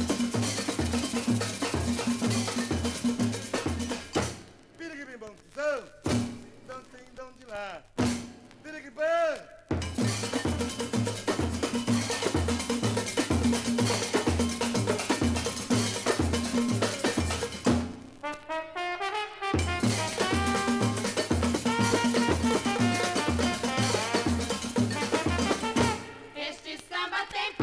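Instrumental samba from a 1962 vinyl LP: a percussion section with a repeating bell-like pattern, drums and a walking bass line. The beat drops out about four seconds in and again near the end, and sliding pitched sounds fill the breaks before the groove comes back.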